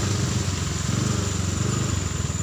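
Motorcycle engine running steadily, close by.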